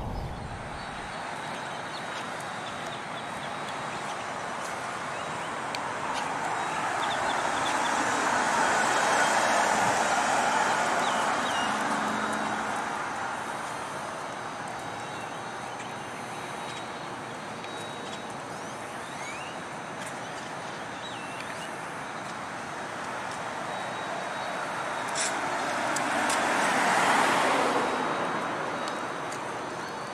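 Cars passing by on a street: tyre and road noise swells and fades twice, loudest about nine seconds in and again near the end.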